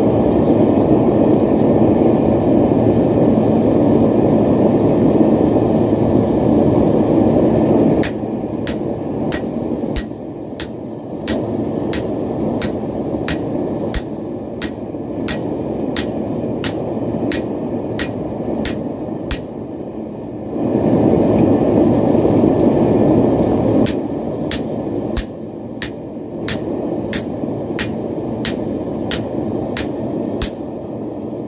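Hand hammer striking hot steel on an anvil, forging a knife blade: ringing blows at about two a second, in a run of about twelve seconds and another from about three-quarters of the way in. Before each run there is a steady, louder rushing noise from the forge while the steel heats.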